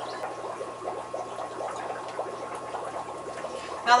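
Soft, irregular rustling and crackling of sisal twine being handled and worked between the fingers, over a steady low hum.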